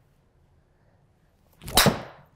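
A driver swing: a quick rising swish of the club ending in a sharp crack as the titanium driver head strikes the ball, about 1.8 s in, with a short ring-out after.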